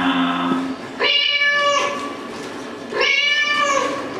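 Two drawn-out meow-like calls about two seconds apart, each just under a second long and dipping slightly in pitch at the end. A lower held call dies away within the first second.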